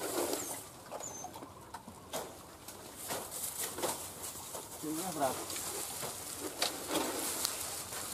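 Dry bamboo litter crackling and twigs snapping as a hunting dog pushes through a thicket of fallen bamboo, with scattered sharp clicks. A brief wavering vocal sound comes about five seconds in, and two faint high chirps come in the first second or so.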